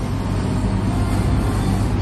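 Steady low rumble and hiss of restaurant room background noise, with no distinct events.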